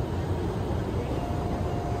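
Steady low rumble of airliner cabin noise in cruise: engine and airflow noise heard inside the economy cabin of a Boeing 787.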